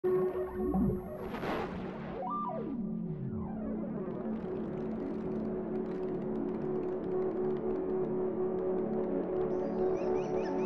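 Intro of an electronic music track: several sliding, falling tones in the first few seconds settle into a steady sustained chord. A high, chirping layer comes in near the end.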